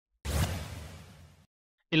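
Transition sound effect between news stories: a single whoosh that hits sharply about a quarter second in and fades away over about a second.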